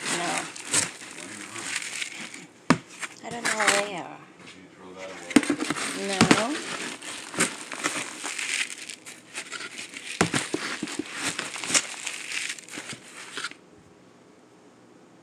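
Plastic plant pots scooped and dragged through potting soil mixed with vermiculite in a plastic tub: gritty scraping and crunching with sharp plastic clicks and knocks, stopping shortly before the end.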